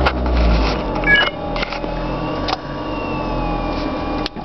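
Car cabin with the engine's low hum, scattered clicks and knocks, and a brief rising electronic beep about a second in. A faint, slowly falling whine follows near the end.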